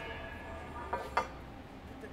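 Steel drill rod being pulled out of a COPROD section tube: two light metallic clinks about a quarter-second apart about a second in, over a faint low hum.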